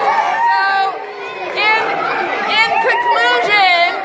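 Several voices chattering at once, talking over each other.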